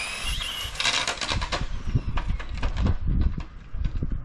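Electric motor of a Team Associated DR10M drag car whining as the car accelerates on a half-throttle pass, its pitch rising. The whine dies away about a second in, and a run of short clicks and knocks follows as the car comes to a stop.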